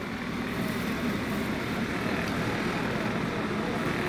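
Steady shop background noise with faint, indistinct voices.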